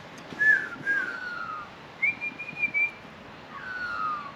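Clear whistled notes: a short bent note about half a second in, a falling glide around a second in, a longer steady higher note at about two seconds, and another falling glide near the end.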